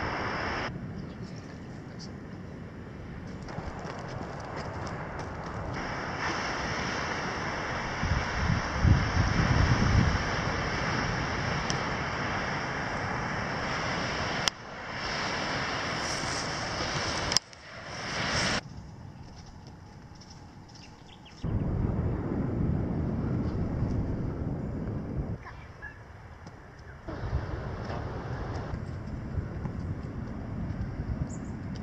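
Outdoor wind noise on the microphone with surf, changing abruptly at several edits. Heavy low gusts buffet the microphone about nine seconds in.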